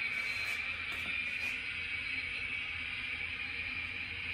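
Lionel O-scale model trains running on the layout: a steady hiss over a low hum, with no distinct chuffs or clicks.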